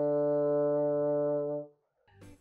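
Bassoon holding a single steady low D (the D in the middle of the bass staff), fingered with the whisper key and the left hand's first two fingers; the note stops near the end.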